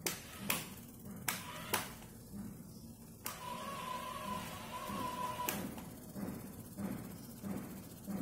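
Small DC motors of a homemade floor-cleaning car running, the high-speed motor spinning a CD scrubbing pad against a stone floor, with a steady low pulsing and several sharp clicks. A louder whirring hiss with a steady whine lasts about two seconds in the middle.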